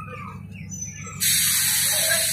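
DEMU train's diesel engine humming steadily, with a brief falling chirp near the start; a little over a second in, a loud hiss of released air starts suddenly and keeps going.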